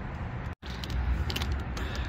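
Low, steady outdoor rumble with a few light clicks about one and a half seconds in. It is broken by a brief full dropout of the sound about half a second in.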